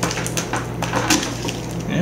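Kitchen knife cutting the tips off elephant garlic cloves against a wooden cutting board: several short, sharp clicks and taps of the blade.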